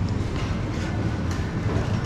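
Steady low rumble of supermarket background noise in a refrigerated aisle, with a few faint ticks and rustles.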